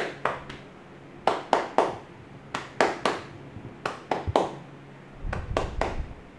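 Barber's hands striking a man's shoulders in a tapping massage: sharp slaps in quick groups of three, a new group about every second and a quarter.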